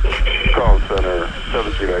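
A man's voice talking over a fire-department two-way radio.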